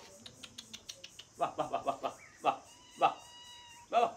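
Kitten mewing several times, the last a long steady mew near the end, as it waits to be bottle-fed. A quick run of soft clicks comes in the first second.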